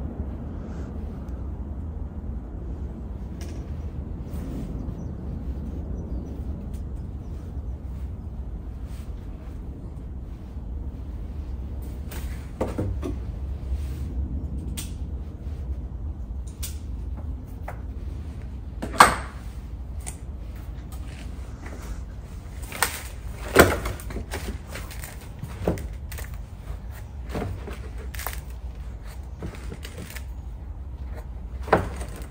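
Scattered knocks and scrapes from cedar trees being shifted by hand in a plastic bonsai tray on a wooden bench, mostly in the second half, with two sharper knocks standing out. A steady low hum runs underneath.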